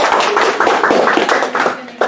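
A small group clapping, a quick patter of claps that fades out over about two seconds.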